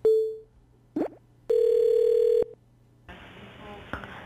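Telephone tones from a computer softphone dialer. A short beep sounds as the call is hung up, a brief chirp follows about a second in, then a steady call tone lasts about a second as the number is redialled. Near the end a new phone line opens with a faint hiss.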